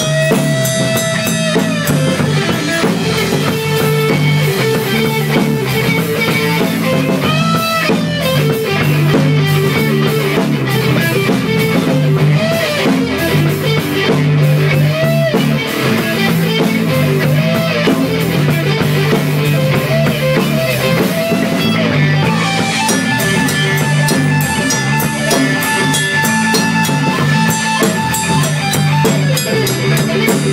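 Live band playing: electric guitar over a drum kit, the guitar notes bending up and down in pitch, recorded close to the drums.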